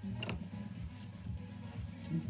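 Dressmaking scissors snipping a sewing thread once, shortly after the start, over quiet background music.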